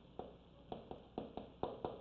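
Chalk tapping and scratching on a blackboard as characters are written: a quick, irregular series of about seven short, sharp taps.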